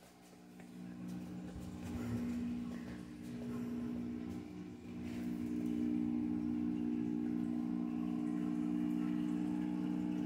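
A steady low electrical or mechanical hum that grows louder over the first few seconds and then holds level, with some rustling and handling noise in the first half.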